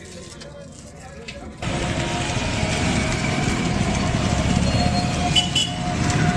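Loud street noise with motor traffic, cutting in suddenly about a second and a half in.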